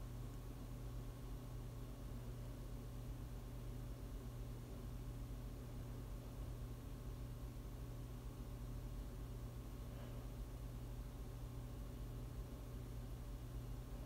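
Faint steady low hum and hiss of room tone, with no distinct sound event.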